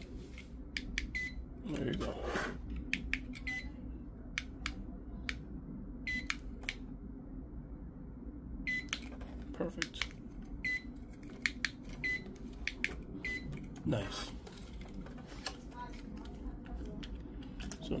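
Key fob buttons clicking as they are pressed again and again, with a dozen or so short high beeps from an Xhorse key programmer as it picks up the fob's radio signal, a sign that the fob is transmitting on its new battery.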